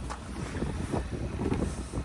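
Wind buffeting the microphone: a steady low rumble of noise.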